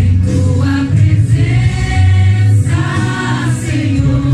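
Worship team and congregation singing a Portuguese-language worship song together, with sustained sung notes over instrumental music with a heavy, steady bass.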